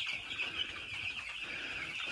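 Steady, dense chorus of peeping from a brooder full of about a thousand young chicks.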